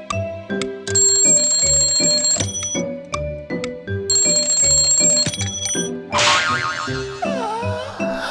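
Mechanical alarm clock bell ringing as a rapid rattle, in two bursts of about a second and a half each, over cartoon background music with a steady beat. Near the end comes a noisy swish and then a long, wavering yawn.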